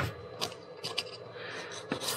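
A few brief light clicks and taps from a hand handling the foam airframe of a flying-wing model plane.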